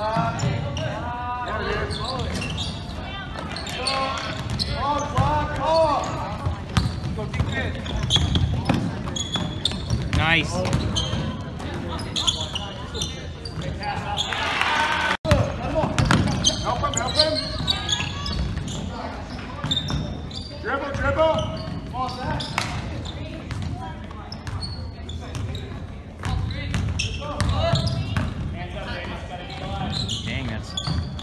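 A basketball dribbled and bouncing on a hardwood gym floor during a game, with players and spectators calling out in the echoing gym. The sound drops out for an instant about halfway.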